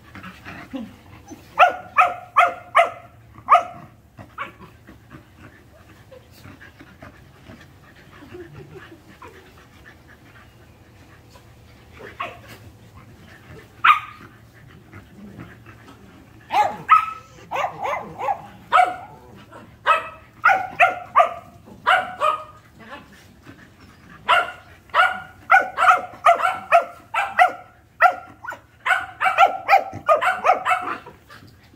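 Dog barking at play: runs of short, high barks, two or three a second, in bursts that come thicker and more often in the second half, after a quieter stretch of several seconds early on.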